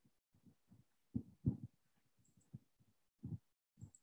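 A few faint, short low thumps, irregularly spaced, in an otherwise quiet room.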